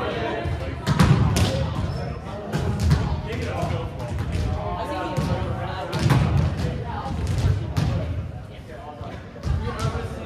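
Volleyballs being hit and bouncing on a hardwood gym floor, irregular thuds from several balls at once, ringing in the large gymnasium.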